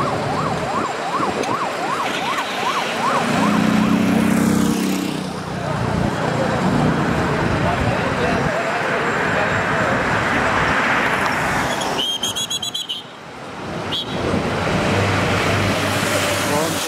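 A siren sweeping quickly up and down, two or three sweeps a second, for the first few seconds, then the steady noise of a motorcade of cars and motorcycles passing along the road.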